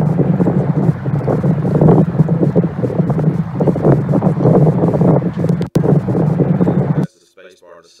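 The lake footage's own soundtrack playing in a video preview: wind buffeting the camera microphone, a loud steady rumble with rough noise over it, breaking off for an instant about two-thirds through and cutting off suddenly near the end.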